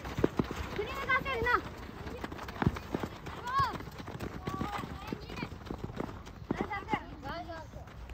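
Children shouting and calling out several times during a youth football game, over quick running footsteps on a gravel pitch and sharp knocks of the ball being kicked.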